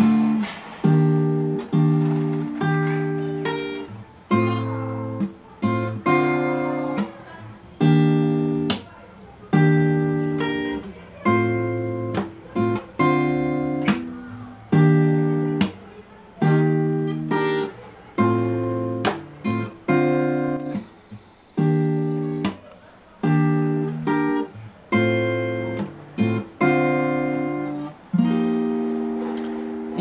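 Acoustic guitar played fingerstyle: chords picked with the thumb on the bass notes and the fingers on the higher strings, in a steady rhythm of about one chord a second, each left to ring and fade. It is the chorus chord progression of the song, played through at tempo.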